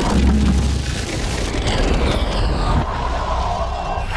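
Sci-fi energy-barrier sound effects for the Hex wall: a continuous deep rumbling drone. Sweeping, falling electronic tones come in around the middle, and a steady humming tone enters near the end.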